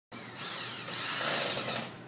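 A small motor, like that of a power tool, running with a high whine that rises in pitch and then falls, stopping just before the end.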